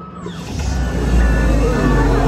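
Music and sound effects over loudspeakers for a character's entrance: a hiss starts a moment in, then a deep rumble builds under steady and gliding tones.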